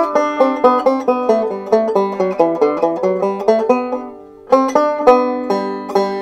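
Five-string banjo picked in a fast run of single notes, demonstrating a picking pattern. The run dies away briefly about four seconds in, then a few more notes follow and are left ringing.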